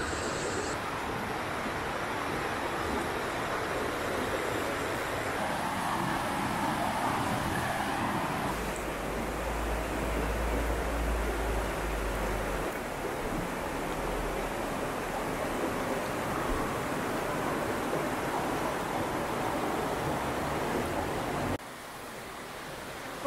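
Fast, shallow river rushing over rocky rapids, a steady wash of water noise. A low rumble joins it for a few seconds in the middle.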